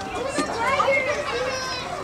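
Indistinct chatter of several young children's voices, high-pitched and overlapping, with some calling out.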